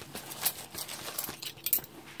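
Metal spoons clinking and tapping as they are picked up and handled, a few sharp clicks with the loudest near the end.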